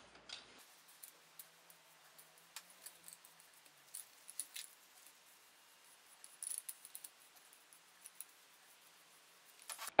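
Faint handling noise: scattered small clicks and light rubbing as a wooden revolver grip is oiled with a cotton ball and handled in rubber-gloved hands, with the most audible clicks about four and a half seconds in and again near seven seconds.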